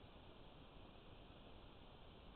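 Near silence: a faint steady hiss of recorder noise.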